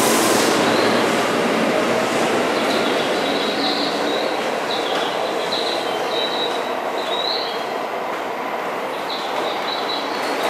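Yellow Seibu Railway electric commuter train pulling out and accelerating away: a whine from the traction motors rises in pitch over the wheel and track noise, which slowly fades as the train draws off. From about three seconds in, the wheels give short, high squeals again and again.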